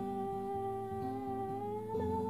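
Acoustic guitar played in a steady repeating pattern under one long wordless hummed note, which slides up in pitch near the end.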